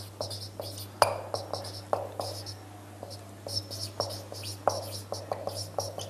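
Marker pen writing on a whiteboard: irregular taps as the tip meets the board and short high squeaks as it drags across the surface, several strokes a second. A steady low hum runs underneath.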